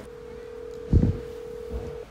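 Telephone ringback tone played through a smartphone's speakerphone: one steady tone, two seconds long, as the outgoing call rings on the other end. A low thump sounds about halfway through.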